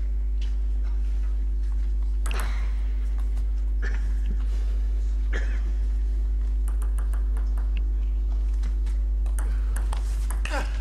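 A steady low electrical hum with two faint steady tones above it runs under the sports-hall sound. Scattered short sharp clicks of a table tennis ball come through, with a quick run of them about two-thirds of the way in.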